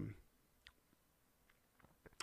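Near silence with a few faint, brief clicks.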